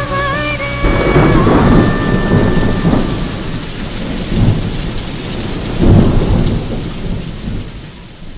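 Thunder rumbling over steady rain, taking over from the last held musical notes about a second in. The rumble swells again twice and dies away near the end.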